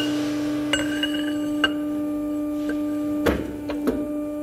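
Steady machine hum with a few sharp metal clinks and knocks as a steel tube is handled against the steel die of a hydraulic bending press. The loudest knock comes about three seconds in, and the first clink leaves a brief metallic ring.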